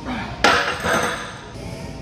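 A loud metallic clank about half a second in, ringing briefly, with a smaller knock just after: a loaded barbell and its iron weight plates striking metal.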